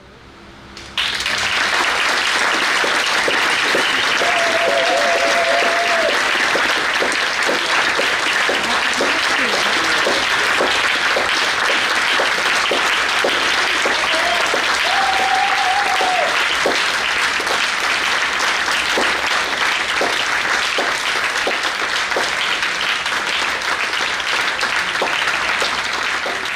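Audience applause, starting suddenly about a second in and going on steadily, with two long held calls from the crowd a few seconds in and again near the middle.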